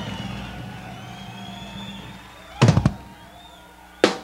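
Drum kit struck in a sparse solo passage: a quick cluster of three or four loud hits about two and a half seconds in, with a low tone ringing on between the strokes.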